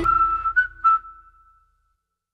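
End of the outro music, an acoustic-guitar track with a whistled melody: the whistle holds its last note, is briefly re-struck twice, and dies away about a second and a half in.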